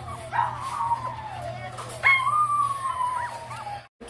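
Newborn Siberian husky puppy crying: two long, high whining cries that slide downward in pitch, the second louder and starting with a sharp upward yelp.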